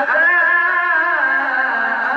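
A male qari reciting the Quran in the melodic husn-e-qirat style into a microphone, holding one long, ornamented note whose pitch wavers.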